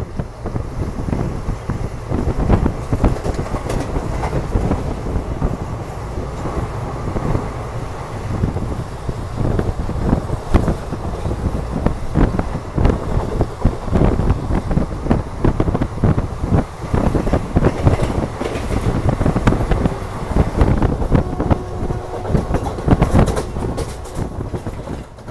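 Sleeper-class coach of an express passenger train running at speed, heard from its open door: a steady rumble of wheels on rail with a rapid, irregular clatter of wheel knocks.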